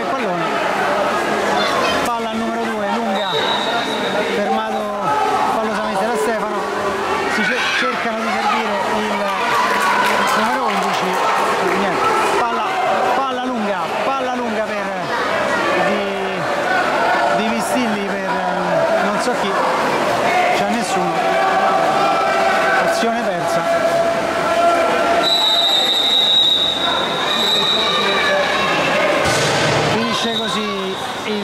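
Overlapping shouts and chatter of players, coaches and spectators, echoing in an indoor pool hall. A steady high whistle tone sounds briefly about three seconds in, and again for about three seconds near the end: the referee's whistle.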